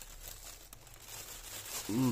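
Soft crinkling and rustling of a thin plastic mailing bag as it is handled and pulled open.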